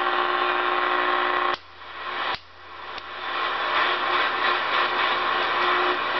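Cobra 2000GTL CB radio on AM, its speaker giving out loud, steady receiver static. A front-panel switch clicks and cuts the static off about a second and a half in, and again just under a second later, with another click about three seconds in. Each time the static swells back up gradually.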